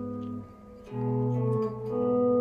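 Clean electric guitar playing two-note intervals. A held pair rings and fades, then about a second in a new pair is plucked and rings on: G-sharp in the bass with B above, the fifth in the bass of an E7 chord in second inversion.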